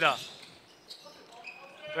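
Faint sounds of a basketball game on a hardwood gym court: a single ball bounce about a second in, then a brief high squeak, likely a sneaker on the floor.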